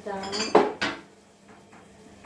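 Kitchen dishes and metal cutlery being handled, clinking and clattering, with two sharp knocks within the first second.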